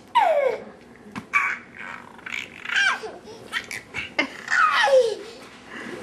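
Toddler laughing in about four separate high-pitched bursts, each falling in pitch.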